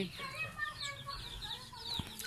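Chickens clucking: a string of short, faint calls.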